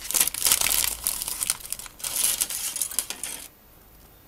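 Plastic bag and paper packaging crinkling as model-kit parts are handled, in irregular bursts that stop about three and a half seconds in.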